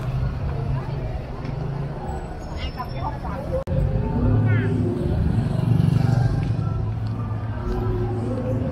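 Busy street at night: chatter of passers-by over the steady hum of nearby car and motorbike engines. The sound breaks off for an instant and changes about three and a half seconds in, after which the engine hum is louder.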